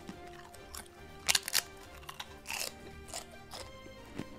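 Someone biting into a crisp, extremely hot tortilla chip and chewing it, with a loud close pair of crunches about a second in and several more crunches after. Background music plays throughout.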